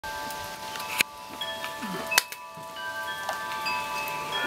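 Chimes ringing: several overlapping tones at different pitches start one after another and hold. Two sharp clicks come about one and two seconds in.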